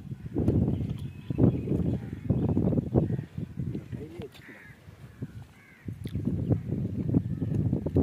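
Men talking in short bursts, with a bird calling faintly a couple of times in the middle.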